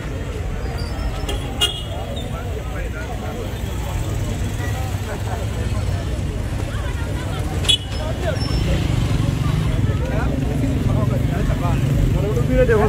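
Street noise: vehicle traffic running with a steady low rumble and people's voices mixed in, plus two sharp knocks, one about a second and a half in and one near eight seconds.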